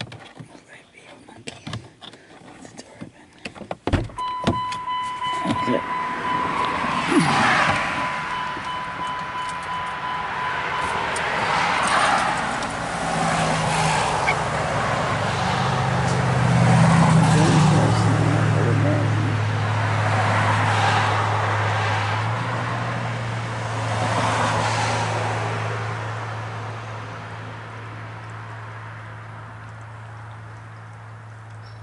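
Inside a car: handling clicks and a thump, then a steady high electronic beep for several seconds, followed by the car's engine running with a steady low hum to the end.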